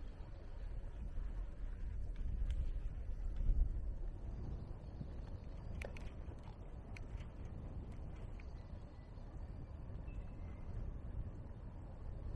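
Low rumble of wind buffeting a shoulder-mounted camera's microphone while riding a bicycle, with tyre noise on wet asphalt, heaviest in the first few seconds; a few faint clicks come through now and then.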